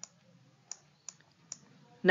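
Three faint, sharp clicks about 0.4 s apart over quiet room tone.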